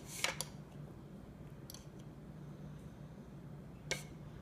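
Fork scraping and clicking against the inside of a bowl as a child pokes at her food: a short scrape about a quarter second in, a fainter one near the middle and a sharper one near the end.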